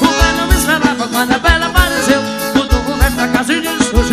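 Forró band music: accordion and other instruments over a steady bass-drum beat of about three strokes a second.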